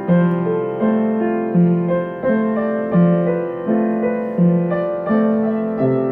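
Digital piano played with both hands: a slow, even succession of chords, a new one struck about every three-quarters of a second, each ringing on until the next.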